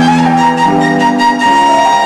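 Violin and piano playing classical music: the violin holds a long high note while lower piano chords change about every three-quarters of a second.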